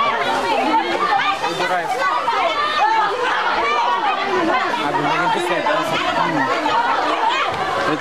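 A crowd's chatter: many voices talking at once, overlapping without pause.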